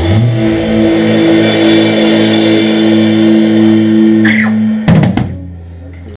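A live rock band ending a song: electric guitars hold a final chord over a rolling drum kit and cymbal wash, then the whole band strikes one last hit about five seconds in, and the sound dies away.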